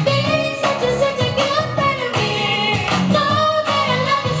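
A woman and a man singing a pop duet through handheld microphones over an instrumental accompaniment with a steady beat.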